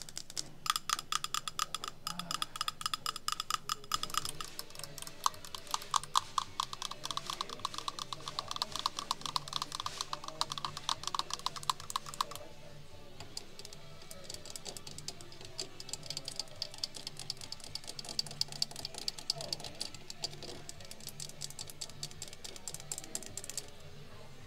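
Long acrylic fingernails tapping rapidly on the metal body of an antique typewriter, the strikes ringing with a metallic tone. About halfway through, the tapping changes to nails tapping and scratching on the cases of antique mantel clocks.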